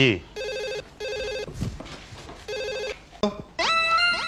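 A telephone ringing with a trilling electronic ring: two short rings close together, then a third about a second later. Plucked-string music comes in near the end, louder than the rings.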